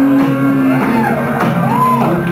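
Loud dance music with a melody line that rises and falls in pitch.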